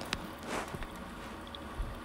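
Raw prawns dropped by hand into a pot of simmering curry sauce: a soft wet squish about half a second in, then a low steady background.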